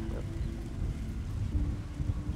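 Wind noise on the microphone with ocean surf behind it: a steady, uneven low rumble.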